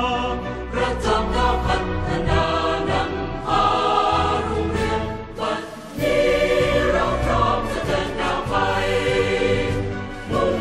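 Background music: a choir singing a Thai song over instrumental backing.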